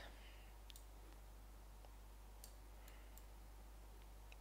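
Near silence: a steady low hum with a few faint computer mouse clicks.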